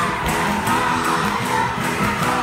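Live gospel praise music: a lead singer on a microphone and the congregation singing along to band accompaniment, with hand clapping in time.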